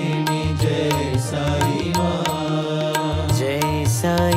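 Hindu devotional bhajan music: singing over a steady, regular percussion beat.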